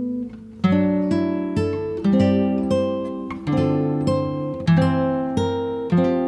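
Background music: acoustic guitar strumming chords, a new chord about every half second to second, each ringing out and fading. It drops briefly just before the first strum about half a second in.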